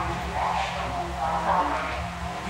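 Muffled, low-quality speech of a care worker picked up by a hidden camera, over a steady low hum.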